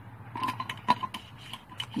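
Metal screw lid being twisted shut on a glass mason jar: a run of small scraping clicks from the threads, with one sharper click about a second in.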